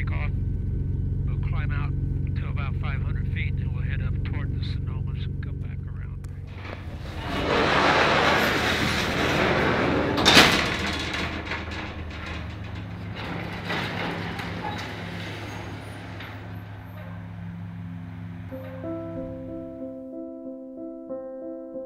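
A metal hangar door sliding open along its track: a loud rolling rumble for several seconds, with a sharp clang at its loudest about ten seconds in. Before it there is a steady low drone with indistinct voices. Near the end, soft piano music comes in.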